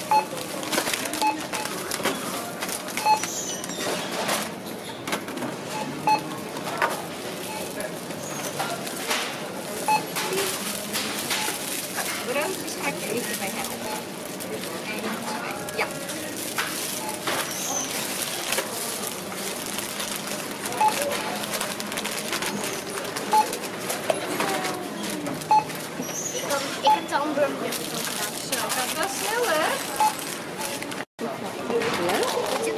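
Supermarket self-checkout: short scanner beeps every few seconds as groceries are scanned, with plastic bags crinkling and background voices of shoppers.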